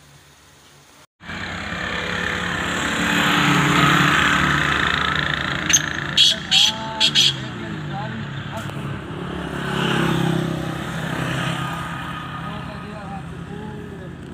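A motor vehicle's engine running close by, starting suddenly about a second in and swelling and easing twice. A quick cluster of four or five sharp clicks comes between about six and seven seconds in.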